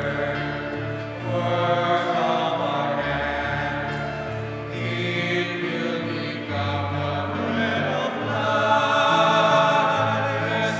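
A choir singing an offertory hymn at Mass, with instrumental accompaniment; held bass notes change every second or two under the voices.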